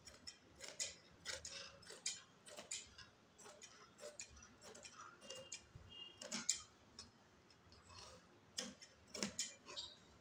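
Large tailor's scissors snipping through kurti dress fabric along a chalk line: a run of short, crisp snips, about two a second, with a brief pause partway through.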